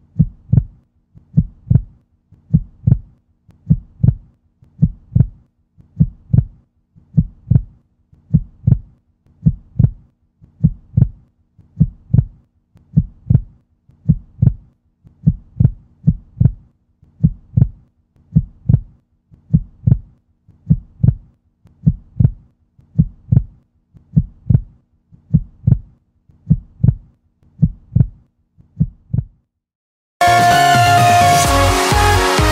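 Recorded heartbeat sound: a steady lub-dub double thump repeating a little slower than once a second, with a faint low hum underneath. It stops just before the end.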